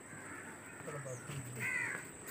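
A crow cawing briefly near the end, over a faint low voice in the background.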